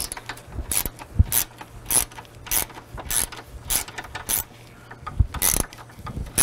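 Ratchet with a T25 Torx socket tightening a radiator mounting bolt. The pawl clicks in a run of short strokes, about two a second, with a brief pause near the end.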